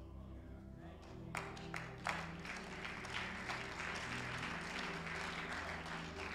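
Congregation applauding, the clapping starting about a second in and growing, over soft sustained organ chords.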